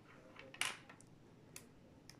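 Small magnetic balls clicking against each other as a chain of them is wound round a cluster: a few faint clicks, the loudest a short rattle just over half a second in.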